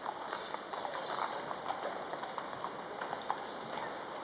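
Hooves of many horses in a mounted column clip-clopping, a dense irregular patter of overlapping hoofbeats.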